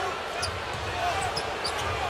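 Live basketball game sound in an arena: a steady crowd murmur with a ball being dribbled on the hardwood court and a few brief sneaker squeaks.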